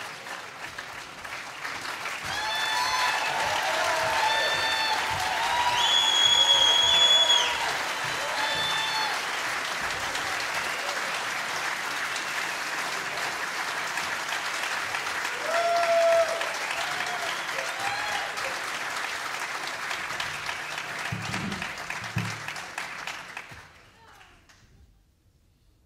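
A concert audience applauding, with whoops and one long high whistle rising out of the crowd in the first half. The applause tapers off near the end.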